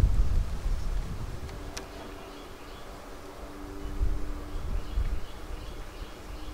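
Honeybees buzzing around an open hive, a few steady drones in the low-middle range, over a low rumble. A single sharp click comes a little under two seconds in.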